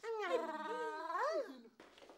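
A baby crying: one long wail that wavers up and down in pitch and breaks off about a second and a half in.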